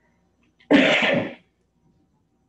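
A person gives one loud, short cough lasting under a second.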